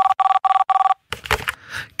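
Telephone ringing sound effect: four short, identical two-tone beeps in about a second, then it stops.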